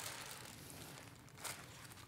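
Faint handling noise: soft rustling with brief clicks at the start and about one and a half seconds in.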